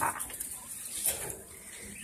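Coturnix quail being caught by hand in a wire cage: scuffling of feathers and straw, with a short sharp noise about a second in.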